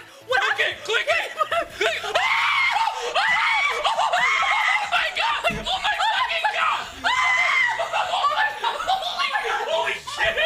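People screaming and laughing in excitement, with several long, high shrieks among shouts and giggles.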